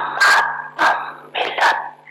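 A dog barking: a quick run of about five sharp barks that stops near the end.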